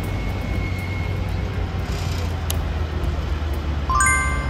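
Diesel engine of a motor grader running steadily as the machine drives past, a low, even rumble.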